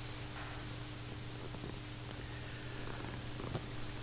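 Steady low electrical hum of room tone with a faint hiss and a few faint clicks, during a silent pause.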